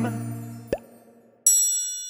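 Cartoon intro-jingle sound effects: a held music chord fades out, a short pop comes about three quarters of a second in, then a bright bell-like ding about a second and a half in rings and slowly dies away.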